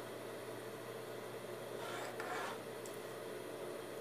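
A pen drawing a short mark on brown pattern paper along a plastic ruler: one faint scratch about two seconds in, over steady room hiss.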